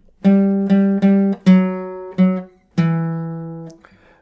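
Acoustic guitar playing a slow single-note riff on the 4th string: about six picked notes, with the fretting finger sliding between the 5th, 4th and 2nd frets. The last note rings out for about a second.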